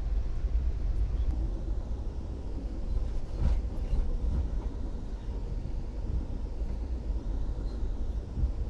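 Passenger train coach running along the track, heard from inside: a steady low rumble of the car rolling on the rails, with a single sharp click about three and a half seconds in.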